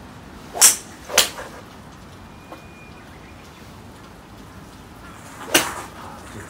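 Golf shots on a practice range: three sharp club-on-ball strikes, two about half a second apart about a second in and one near the end, over a steady background hiss.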